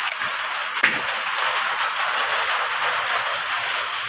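Heavy rain falling steadily, a dense even hiss.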